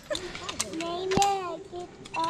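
Voices talking, with a few sharp metallic clicks from zipline harness carabiners and a trolley being clipped onto the cable. The loudest click comes a little over a second in.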